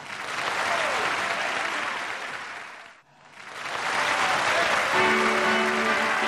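Audience applauding after a song. The clapping fades away and breaks off about halfway through, then swells back. Near the end, guitar music starts up over it.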